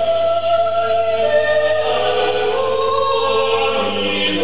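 Four male voices singing a Renaissance motet a cappella in polyphony, with a male soprano (sopranista) on the top line. The voices hold long notes that shift one after another.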